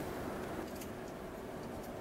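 Steady low background noise with a faint constant hum, broken only by a couple of faint ticks; no distinct event.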